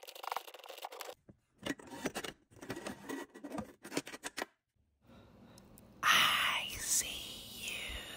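Faucet mounting hardware and braided supply hoses being worked loose and pulled out through the sink hole: metal clicks, rattles and scraping, broken by two short silent gaps. A louder scraping slide starts about six seconds in.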